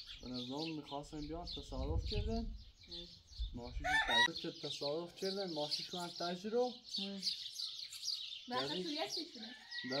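Small birds chirping steadily over people talking outdoors, with a short, loud rising call about four seconds in.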